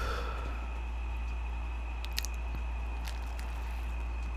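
Close-miked chewing on a mouthful of burger: soft, wet mouth sounds with a few faint small clicks, over a steady low hum.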